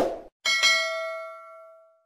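Subscribe-button sound effect: a short click at the start, then a bright notification-bell ding about half a second in that rings and fades away over about a second and a half.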